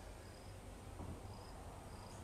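Faint insect chirping: short, high chirps repeating evenly, about one every two-thirds of a second.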